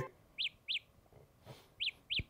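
Samsung Galaxy Buds Live earbuds sounding their Find My Earbuds locator chirp. Short, high chirps that rise and fall in pitch come in pairs about a third of a second apart, and the pair repeats about a second and a half later.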